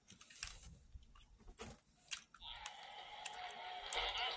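Biting into and chewing a white chocolate candy shell with a soft jelly filling: scattered small crunches and mouth clicks. About halfway through, a steady background sound with held tones comes in.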